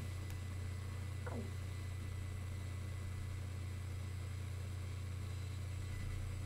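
Steady low electrical hum in the recording, with a faint short falling tone about a second in.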